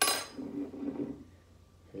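A long-handled metal spoon set down with one sharp clink that rings briefly.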